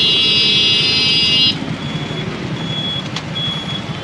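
A high, held electric vehicle horn sounds and stops about a second and a half in. After it, short high electronic beeps repeat roughly every two-thirds of a second over the rumble of street traffic.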